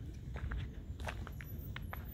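Footsteps of a person walking on a gravel lane: a run of irregular steps over a steady low rumble.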